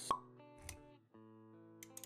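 Intro-animation sound effects over music: a sharp pop just after the start, a softer low thump about two-thirds of a second in, then held synth-like music chords starting again after a brief gap.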